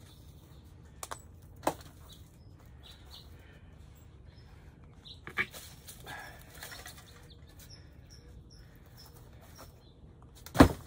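Garden soil being scooped and tipped with a flat hand scoop: a few light knocks and a short rustling scrape over low steady background noise.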